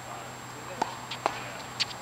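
Tennis ball knocking on a hard court: three sharp pocks about half a second apart, with a fainter click between the first two.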